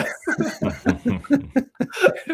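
Men laughing and chuckling in short, rapid bursts, dying away about a second and a half in.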